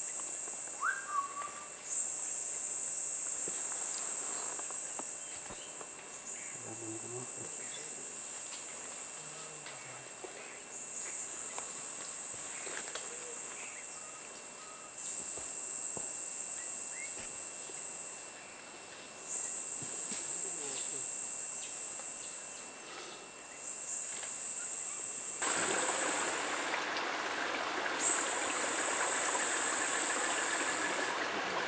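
A high-pitched insect buzz in repeated bouts of about three seconds, each broken by a pause of under a second. About 25 seconds in, a steady rushing noise joins it.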